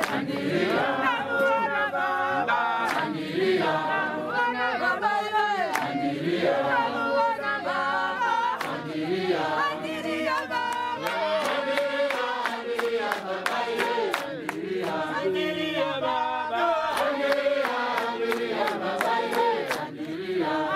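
A congregation singing a hymn together without instruments, many voices overlapping steadily. Sharp clicks sound now and then, most often near the end.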